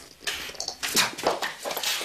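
A person making dog-like snarling and whimpering noises in short, irregular bursts.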